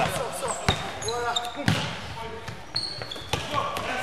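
Basketball being played in a sports hall: the ball bouncing on the wooden floor a couple of times, short high sneaker squeaks, and players calling out, all echoing in the hall.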